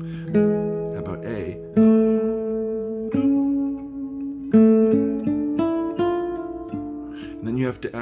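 Nylon-string classical guitar playing a slow single-note line, about ten plucked notes each left to ring, outlining the chord tones of a progression in D minor.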